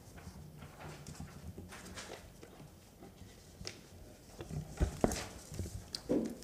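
A quiet pause in a meeting room: a faint low hum, scattered small clicks and knocks from desk or microphone handling, and two sharper knocks about five seconds in.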